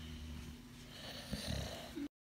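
American bully snoring-like, noisy breathing through its short muzzle, with a louder burst about one and a half seconds in.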